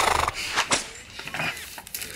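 A man's short, breathy laugh, then soft handling noises and a click as a picture book is moved.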